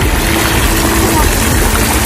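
Fountain jets splashing steadily into a shallow pool, heard as a constant rushing noise under a heavy low rumble, with faint voices in the background.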